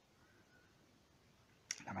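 Near silence in a pause between a man's spoken sentences, then near the end a short mouth click as he starts speaking again.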